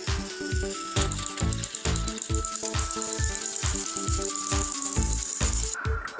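Background music with a steady beat, over the whirring gears of a battery-powered Plarail toy train engine running on plastic track; the high whine stops just before the end.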